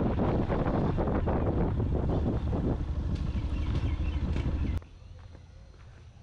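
Motorcycle running along a road, heard from the rider's seat with heavy wind noise on the microphone. It cuts off suddenly about five seconds in, leaving a much quieter outdoor background.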